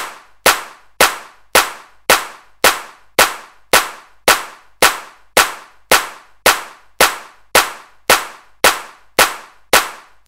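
A steady beat of single sharp percussive hits, about two a second, each dying away quickly, with no melody or singing over it.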